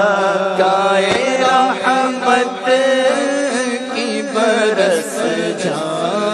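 A man singing an Urdu na'at into a microphone, drawing out long, wavering melodic notes over a steady low drone.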